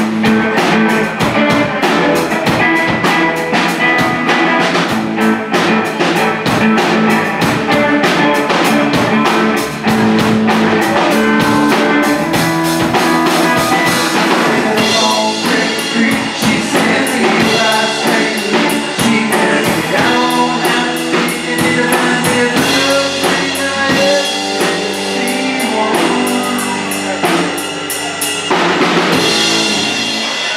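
Live band playing rock music: electric guitar over a drum kit, the sound filling out in the upper range about halfway through.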